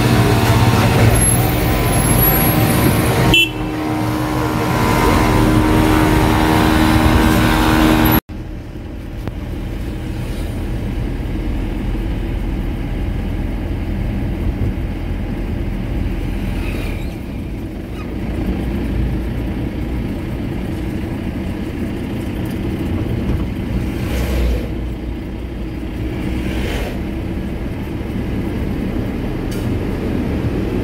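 Road traffic with steady held tones over engine noise for about the first eight seconds, then a sudden cut to the steady engine and road rumble of a vehicle driving along an open road, heard from inside it.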